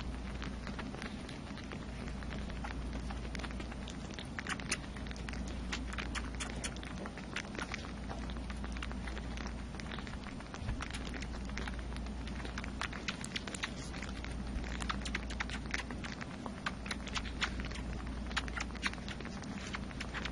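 Bottle-fed kittens suckling and chewing on a bottle nipple: many small, irregular clicks and smacks over a steady low hum.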